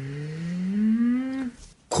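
A person's long, drawn-out vocal interjection, a single sustained sound rising steadily in pitch for about a second and a half. Speech resumes near the end.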